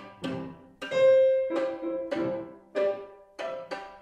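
Violin and piano duo playing classical music: a string of short, detached notes about every half second, each ringing briefly and dying away, with one longer held note about a second in.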